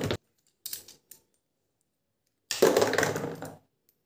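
Metal and plastic Beyblade parts clicking and clattering as a Twisted Tempo is taken apart by hand: two faint clicks about a second in, then about a second of louder clatter.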